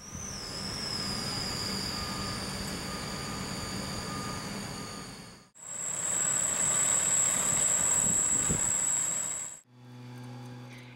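Engines of heavy lifting equipment, a mobile crane and a bucket truck, running steadily, with a high steady whine over the engine noise. The sound drops out briefly at about five and a half seconds and comes back with a higher, stronger whine.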